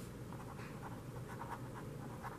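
Red marker pen writing a word by hand: a run of short, faint strokes of the felt tip against the writing surface.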